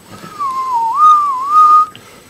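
A person whistling a short wavering phrase: the note slides down and back up twice, then holds high before stopping shortly before the end.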